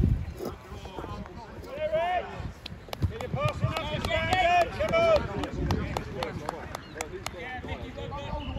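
Distant raised voices of players and spectators calling out across a football pitch, over a low rumble, with scattered short sharp knocks.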